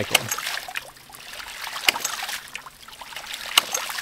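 1-inch hydraulic ram pump cycling with no air cushion in its pressure tank: each water-hammer hit is a sharp knock, three of them about every second and three-quarters, over a steady splash of running water. It is hitting hard because a crack in the pressure tank's cap has let the air out.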